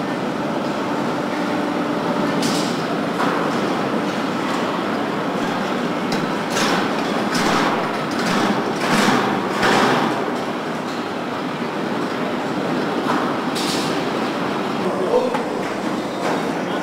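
Car-body assembly hall ambience: steady machinery noise from the conveyor line, broken by several short hisses, most of them bunched in the middle.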